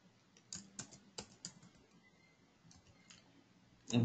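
Computer keyboard being typed on: a quick run of keystrokes about half a second in, then a few fainter ones near three seconds.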